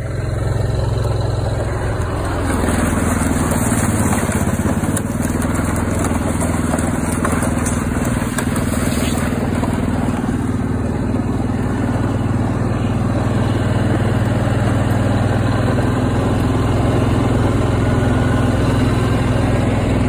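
Single-cylinder-style ATV engine running steadily while being ridden, a low even hum that picks up slightly about two and a half seconds in, with wind noise over the microphone.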